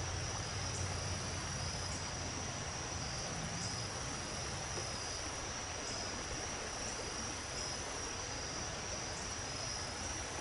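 A dusk chorus of crickets: a steady high-pitched trill over a faint even hiss.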